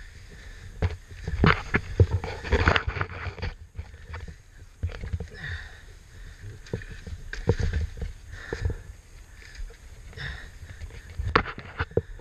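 Irregular knocks, clunks and scrapes from a KTM 450 XC-F dirt bike being manhandled over rocks, over a low rumble.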